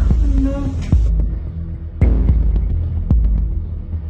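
Dramatic suspense background music: a deep, throbbing bass drone with a sharp hit about once a second, like a heartbeat.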